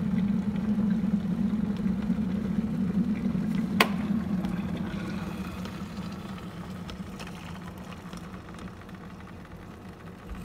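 Black+Decker electric kettle rumbling steadily at the boil, then a sharp click about four seconds in, after which the rumble dies away. Hot water is then poured from the kettle into a ceramic mug.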